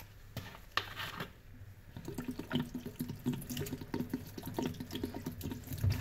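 A few light taps, then from about two seconds in a thin stream of water pouring and splashing onto foam sponges in a stainless steel sink.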